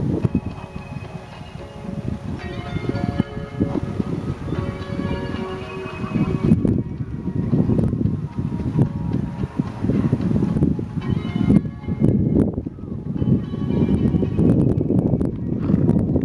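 Bells ringing steadily, layered tones that come in a few seconds in and carry on, pausing briefly near the middle, over a steady low rumble of wind on the microphone.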